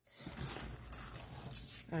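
Loose coins clinking and a clear plastic zip pouch rustling as coins are handled and put into a binder pouch, with a few sharp clinks about one and a half seconds in.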